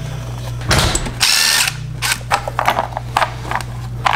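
A cordless power driver runs in one burst of about a second, starting about a second in. A few short clicks and knocks of metal parts being handled follow.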